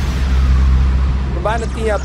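Electronic dance music at a break in the track: the kick drum has dropped out and a deep sustained bass note holds under a haze of noise, slowly fading. A man's voice starts speaking about one and a half seconds in.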